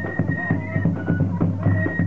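A marching band playing, with brass and drums.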